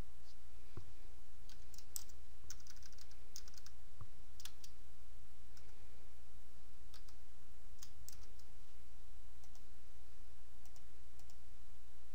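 Computer keyboard keystrokes and mouse clicks, a scattered run of light clicks while a text field is retyped and a radio button is selected, over a steady low hum.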